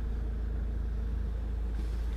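Steady low rumble of a 2009 Citroën C5's 2-litre turbo diesel engine idling in park, heard from inside the cabin.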